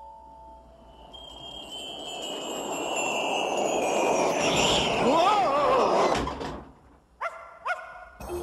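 A rush of wind swelling over several seconds, with whistling tones sliding down in pitch, as a gust blows out of the Christmas-tree door and sucks the character in. Near the loudest point a wavering yell rises and falls, then everything cuts off suddenly, followed by two short rising swooshes.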